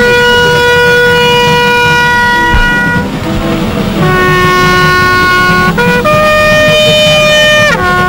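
A solo brass horn plays a slow call in long held notes: one note of about three seconds, a short break, then two more, the last sliding down in pitch near the end.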